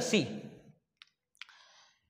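Two short, sharp clicks from a whiteboard marker, about half a second apart, followed by a faint brief rub.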